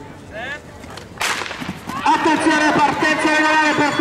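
A single sharp crack of a starting pistol about a second in, starting the race. Loud voices follow from about two seconds in.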